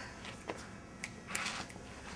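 A few faint finger snaps, irregular and out of rhythm, over quiet room sound.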